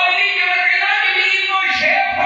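A man's amplified voice chanting in long held notes, sung rather than spoken, through loudspeakers in a large hall. It starts abruptly just before and stays loud throughout.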